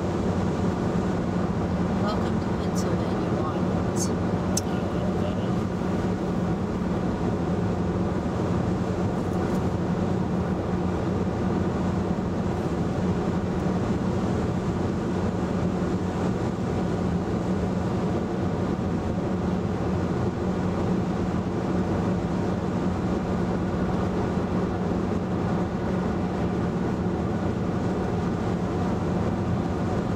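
Steady road and tyre noise heard from inside a 2011 VW Tiguan's cabin at highway cruising speed, an even rush with a low hum underneath.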